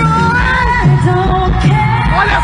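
Pop song: a woman singing held, gliding notes over a low bass line.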